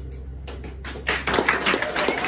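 Audience applause breaking out as a song ends: a few scattered claps about half a second in, swelling into full clapping with cheers from about a second in, over a low steady hum.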